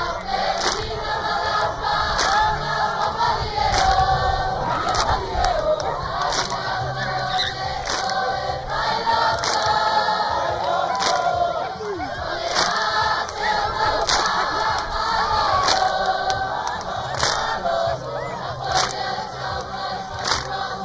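Group singing of a Samoan taualuga song over a steady beat, with loud crowd shouts and whoops on top.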